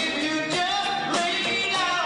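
A live band playing, with keyboards and drums under a sung vocal line.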